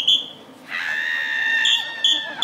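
Short, shrill whistle-like toots, one right at the start, then a held high-pitched tone with overtones from under a second in, and further toots at the very end.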